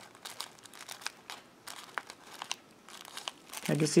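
Clear plastic wrapping on a skein of yarn crinkling as it is handled, a string of small irregular crackles.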